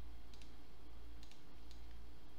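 A few faint computer mouse clicks in the first second, over a low steady electrical hum.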